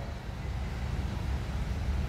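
Low, steady rumble of outdoor background noise picked up through the microphone, with no speech.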